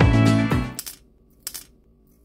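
Background music stops under a second in, followed by two brief, sharp handling sounds from an acrylic keychain and its metal ring and chain being turned over in the hands.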